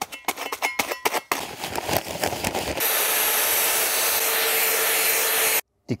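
A paper sack of concrete mix being torn open with a few sharp rips and rustles. Then, from about three seconds in, a steady electric paddle mixer runs, stirring the concrete in a bucket, and it stops abruptly shortly before the end.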